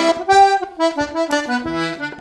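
Hohner Erika two-row D/G button accordion playing a hornpipe: a melody of quick, changing notes over short bass and chord notes from the left-hand buttons.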